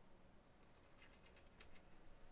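Near silence, with a few faint ticks around the middle as a small screwdriver turns a screw out of a drawing tablet's plastic back case.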